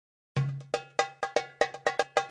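Opening music of rhythmic struck percussion: a quick, uneven pattern of sharp, ringing, bell-like hits, about four a second, starting about a third of a second in.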